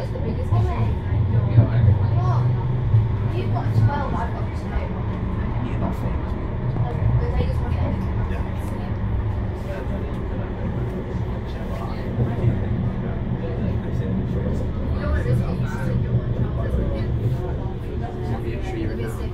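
Bombardier Flexity Swift M5000 tram running along the track, heard from the driver's cab: a steady low rumble from the running gear and motors, loudest in the first few seconds. Indistinct voices sit faintly under it at times.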